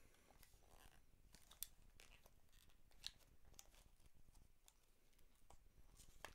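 Near silence broken by faint scattered clicks and scratches of fingers picking at a small cardboard playing-card box that is stuck shut.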